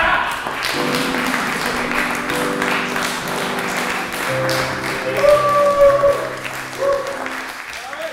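Audience applauding over music with long held notes; the applause and music fade towards the end.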